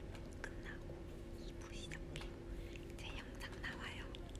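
A woman whispering in short phrases, over a low steady hum that stops about three seconds in.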